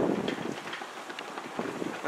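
Wind buffeting the camera microphone, loudest at the start and easing off after about a second.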